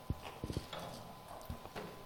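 A few soft, irregularly spaced knocks and thumps over a faint steady hum of the hall's sound system.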